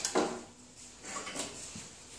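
A few light knocks and rustles as a welder moves about and puts on his welding helmet.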